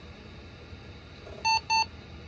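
Two short electronic beeps of the same pitch from the Compaq Concerto's built-in speaker, about a quarter second apart, as the machine restarts: its start-up beeps.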